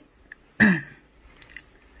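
A brief vocal sound with falling pitch, like a short 'hm', about half a second in. Around it are faint soft clicks from the crochet hook and yarn being worked.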